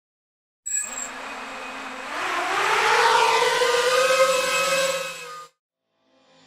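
Quadcopter drone motors spinning up in an intro sound effect: a rush of propeller noise under a whine that rises in pitch and grows louder. It starts suddenly just under a second in and cuts off sharply near the end.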